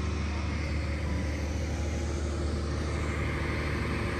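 Diesel generator running with a steady low hum.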